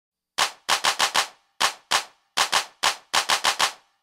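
Gunfire: rapid bursts of sharp gunshots in irregular clusters, about twenty shots in all, starting about half a second in.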